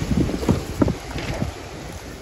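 Wind buffeting the phone's microphone: a low rumble that fades toward the end, with a few faint knocks.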